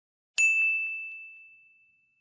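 A single bright bell-like ding, struck about half a second in, with one clear high tone that rings out and fades away over about a second and a half.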